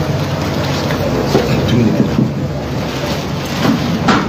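Steady low rumbling noise with scattered short knocks and shuffles as people move about.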